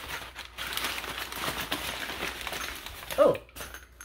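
Crumpled white packing paper crinkling and rustling in the hands as a wrapped object is unwrapped, a dense irregular crackle that stops about three seconds in.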